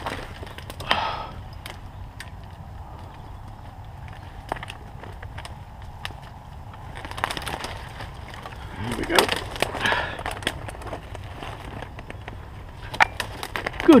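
Twigs snapping and branches crackling and scraping as a person pushes on foot through dense, dry woodland undergrowth: irregular sharp cracks with bursts of rustling.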